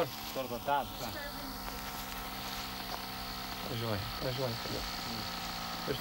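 A man's voice says a few short words, once at the start and again about four seconds in, over a faint steady hum.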